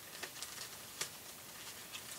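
Faint rustle of a ribbon being untied and pulled from a paper gift-tag pocket, with a few small ticks of fingers and paper about a second apart.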